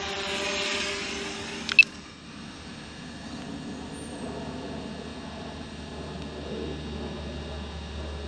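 DJI Mavic Pro quadcopter's propellers buzzing in a steady whine as it flies off low. The whine is loudest in the first two seconds and drops to a quieter steady hum after a sharp click just under two seconds in.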